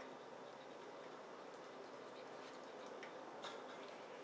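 A dog licking its food bowl clean: faint, scattered clicks and ticks, with a slightly louder click about three and a half seconds in.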